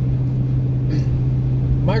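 Steady low drone of a moving car's engine and tyres, heard from inside the cabin.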